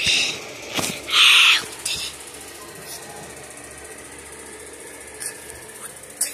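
A child's short, loud, breathy vocal noise about a second in, after a brief burst at the start. A few clicks and bumps from the handheld phone follow, over a steady low hiss.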